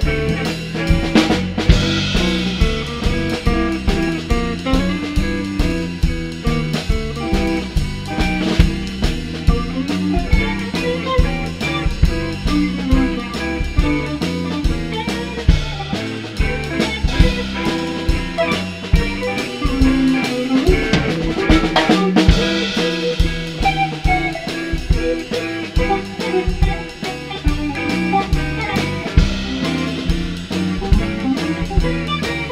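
Live blues band playing: two electric guitars, electric bass and a drum kit keeping a steady beat through an instrumental section without vocals.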